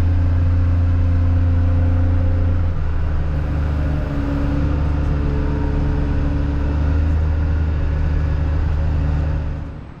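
Wheel loader's diesel engine running steadily, heard from inside the cab while driving; the engine note drops a little about three seconds in and fades out near the end.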